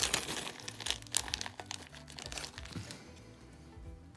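Small clear zip-lock plastic bag crinkling and crackling as it is opened and handled, dying away about three seconds in, over soft background music.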